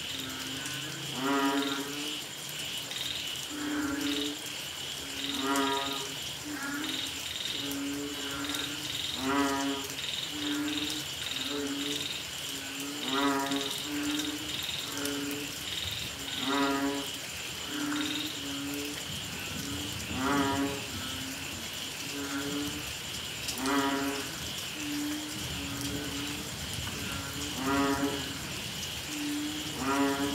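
A chorus of banded bullfrogs (Asian painted frogs) calling after rain: repeated low, moo-like calls, about one a second, from several frogs. A nearer, louder call comes every three to four seconds. A steady high-pitched chorus of smaller callers runs behind them.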